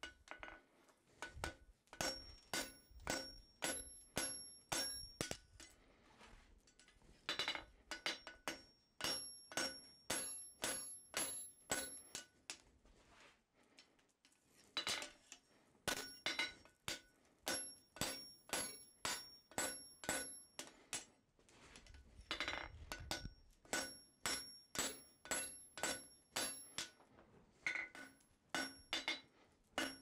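Hand hammer striking a red-hot steel bar on an anvil in runs of steady blows, about two a second, with short pauses between runs, the anvil ringing after each blow. At first the bar is held upright to upset its end, and later it is laid flat on the anvil face and forged toward a scarf for a fold weld.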